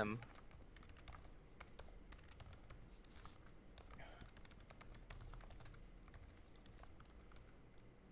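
Faint typing on a mechanical computer keyboard: a steady run of quick key clicks.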